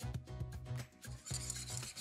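Background music with a steady beat over a held bass line.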